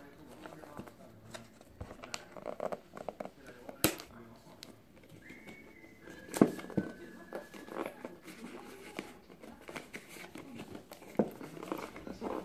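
Paper and thin cardboard packaging being handled: a folded instruction leaflet and a small product box rustling and crinkling, with scattered sharp clicks and taps.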